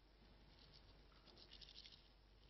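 Near silence: room tone with faint rustling and light ticking, busiest near the end.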